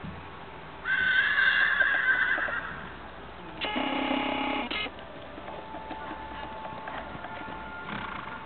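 A horse whinnies about a second in, a wavering call lasting nearly two seconds. A second, flat-pitched tone follows about three and a half seconds in and lasts about a second before cutting off suddenly.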